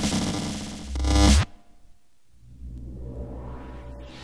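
Electronic breakcore / drum and bass music from a vinyl record. A heavy bass swell cuts off abruptly about a second and a half in, then after a brief lull a low droning rumble builds up.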